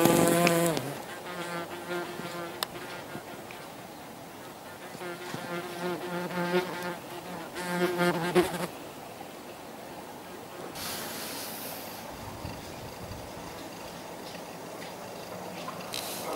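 Yellowjacket wasps buzzing in flight close by: a steady, low wingbeat hum that comes in passes, loud at the start and again about five to eight seconds in, fading away in between.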